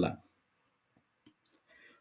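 A man's voice ends a word, then a pause of near silence with a few faint, short clicks.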